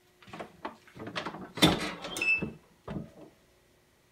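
Manual clamshell heat press being opened at the end of a press: the lever handle is worked and the clamp releases with a loud clunk about a second and a half in, followed by a brief high squeak as the upper platen swings up, and a last knock near the end.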